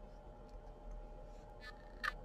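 Very quiet room tone with a faint steady electrical hum, and a couple of faint small clicks near the end.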